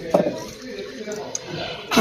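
Brief, faint snatches of speech with no other clear sound.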